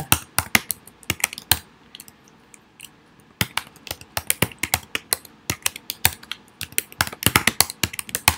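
Typing on a computer keyboard: quick runs of key clicks, a pause of a couple of seconds, then another longer run of typing.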